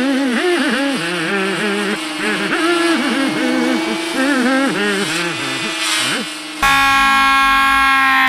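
A steady, fluttering buzz with a wavering, warbling pitched sound sliding up and down over it. About six and a half seconds in, a sudden, much louder distorted blare cuts in and holds.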